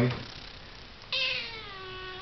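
Silver spotted tabby kitten meowing: one long drawn-out meow starting about a second in, slowly falling in pitch.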